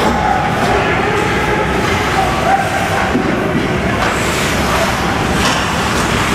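Ice hockey arena ambience: a steady din with indistinct voices of nearby people, and a sharp click about five and a half seconds in.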